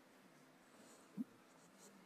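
Near silence: room tone in a hall, with one faint, short sound about a second in.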